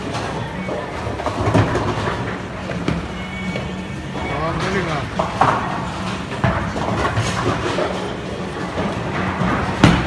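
Bowling alley din: background music and people talking over bowling balls rolling down the lanes and pins clattering. A sharp thud just before the end comes as a bowling ball is released onto the lane.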